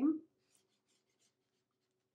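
A water-soluble marker scratching faintly in short strokes on a paper coffee filter while a pattern is drawn.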